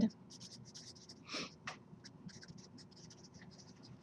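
Felt-tip marker writing block letters on paper: a rapid series of short, faint strokes, one a little louder about a second and a half in.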